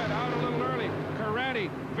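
A commentator's voice over the steady drone of two supercharged nitro funny car engines running down a drag strip.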